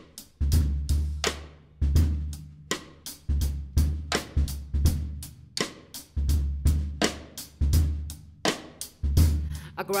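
Jazz drum kit playing a swing intro, snare and cymbal strikes every half second or so over deep bass notes. A singer's voice comes in at the very end.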